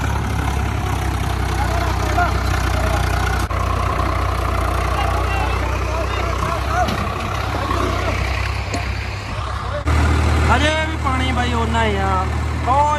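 Engine of an open vehicle running steadily with riders aboard, a low rumble, with people's voices over it. The engine sound changes abruptly near the end.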